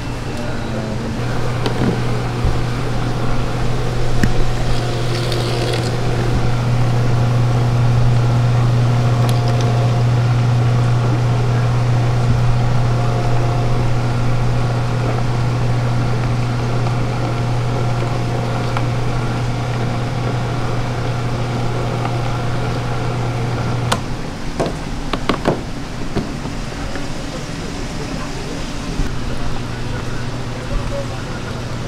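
A steady, low electric-motor hum that cuts off suddenly about three-quarters of the way through, followed by a few sharp clicks and knocks.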